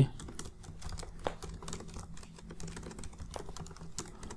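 Typing on a computer keyboard: a quick, irregular run of key clicks as a line of text is typed.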